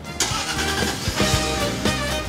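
Jaguar XJ8's 4.0-litre V8 starting about a quarter of a second in and settling to a steady idle, with background music over it.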